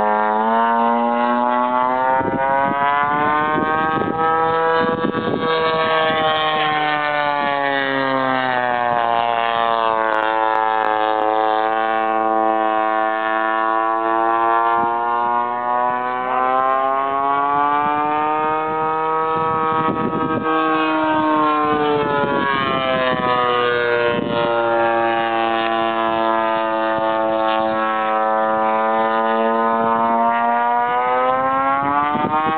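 Custom Stiletto RC airplane with a 22x20 propeller flying overhead: a steady, many-toned drone of its motor and prop. Its pitch climbs and falls slowly as it makes its passes, rising about five seconds in and again about twenty seconds in and dropping in between.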